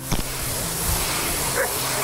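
A flat hand tool scraping across the face of a packed-snow sculpting block, making a steady scraping noise.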